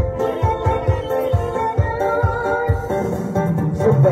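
Amplified instrumental music with a steady low beat, about two beats a second, under a sustained melody.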